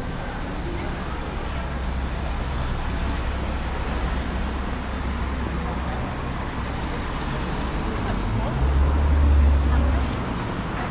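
Town-centre road traffic: cars driving past at low speed with a steady low rumble, which grows loudest near the end as a vehicle passes close.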